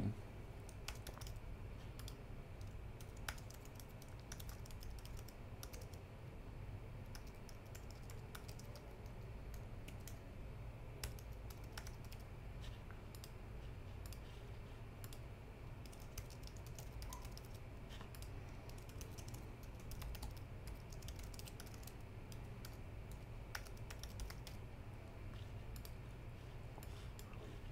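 Faint typing on a computer keyboard: irregular runs of key clicks, heard over a low steady hum.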